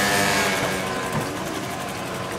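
Small motor scooter engine running as it passes close by and moves away, its pitch falling slightly and its sound fading.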